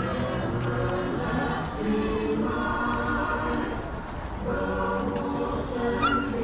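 A choir singing a slow melody in long held notes.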